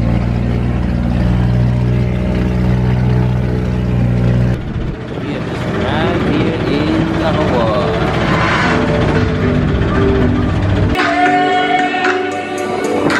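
A small boat's engine running with a steady low drone over the rush of water for the first four and a half seconds, then easing off to a lower, rougher sound as the boat slows toward a dock.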